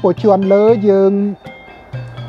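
A man speaking for about the first second and a half, over quiet background music with steady held tones that carry on after the words stop.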